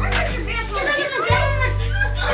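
Several young children's voices chattering and calling out over each other, with music playing in the background.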